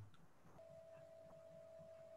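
Near silence: room tone, with a faint steady tone coming in about half a second in.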